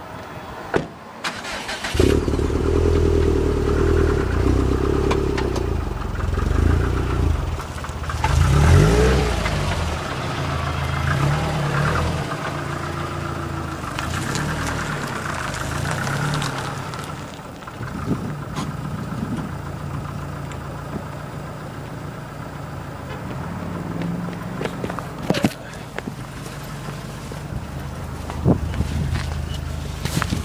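A 2013 Subaru WRX STI's turbocharged flat-four engine, fitted with a Milltek cat-back exhaust, is started about two seconds in. It runs high at first, rises in revs briefly about eight seconds in, then settles to a steady idle.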